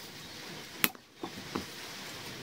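A blade cutting through a piece of black 19 mm poly pipe: one sharp snap a little under a second in as it goes through, followed by a couple of softer clicks, over a faint steady hiss.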